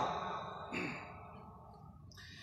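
A pause in a man's sermon: his last word dies away at the start, a brief faint falling breath or sigh comes about three-quarters of a second in, and then it goes almost quiet.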